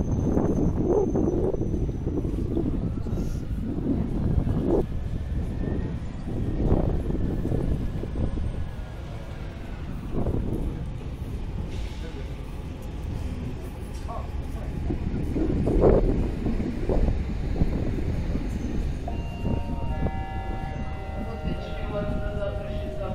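Busy railway platform: crowd chatter over a low rumble of trains. Near the end, steady high tones at several pitches sound at once from the approaching electric multiple unit.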